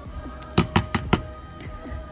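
Handheld battery milk frother whisking collagen powder into water in a plastic cup. Its wire whisk makes a quick run of about five sharp taps against the cup about half a second in, with a faint steady hum underneath.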